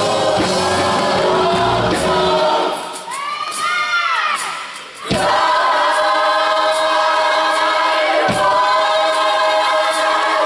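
Gospel choir singing with its band. About two and a half seconds in, the bass drops out and a single voice sings a sliding run. A sharp drum hit then brings the full choir in on a long, steady held chord over the band.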